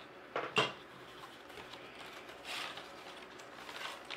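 Reed basket spokes and weaver handled during hand weaving: two sharp clicks near the start, then a soft scraping rustle about two and a half seconds in.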